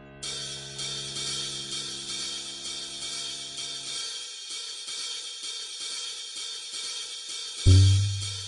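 Cool jazz playing: cymbals and hi-hat keep time throughout, over a low held chord that fades out by the middle. A loud low note is struck near the end.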